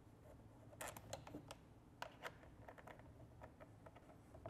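Faint, scattered small clicks as a thumb screw and the wire end of a black interconnect lead are handled and fastened onto a tower's side terminal.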